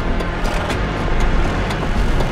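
Trailer sound design: a heavy, steady low rumble with a sharp tick about twice a second.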